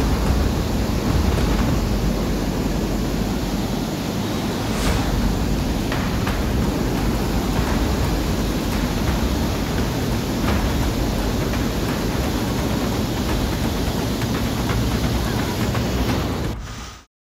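Muddy flash-flood water rushing past in a torrent: a loud, steady rush of water.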